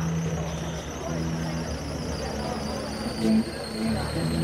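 Solo guitar through a PA playing slow, sustained low notes one after another, the loudest a little past three seconds in, over crowd chatter and a faint steady high whine.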